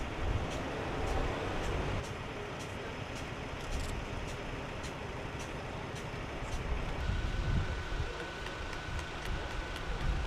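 Emergency vehicles idling at the roadside, a steady low engine rumble mixed with outdoor street noise. A faint steady whine comes in about seven seconds in.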